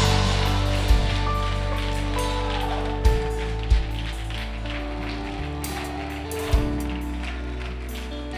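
Live church band holding sustained keyboard and guitar chords, with four isolated bass-drum hits, gradually getting quieter.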